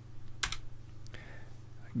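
A single computer keyboard keystroke about half a second in: the Enter key pressed to run a typed terminal command. Under it is a faint, steady low hum.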